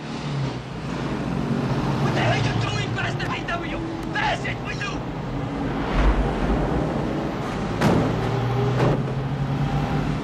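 A school bus driving, its engine running steadily, with high voices inside the bus over it. A heavy thump about six seconds in and sharper knocks later, as a man lands on and clings to the bus roof.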